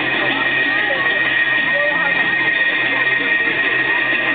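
Music from an arena public-address loudspeaker mixed with spectators' chatter, with a steady high-pitched whine running under it.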